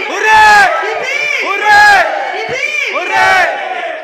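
A crowd of people shouting and cheering together in rhythm, with three loud shouts about a second and a half apart over a continuous din of voices.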